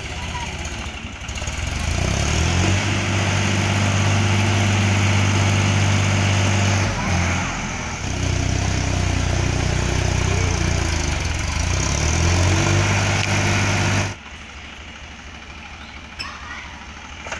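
Small tractor engine running under load as it reverses a trailer loaded with sand, revving up near the start and again near the end, with a brief dip in the middle. The engine sound cuts off suddenly about two seconds before the end.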